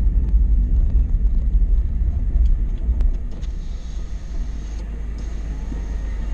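Renault Clio's engine and road rumble heard from inside the cabin as the car drives along a narrow country road. The rumble is steady and low, and it drops a little in level about halfway through.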